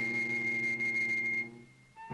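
Flute holding one steady, very high note over a sustained cello note. Both fade out about one and a half seconds in.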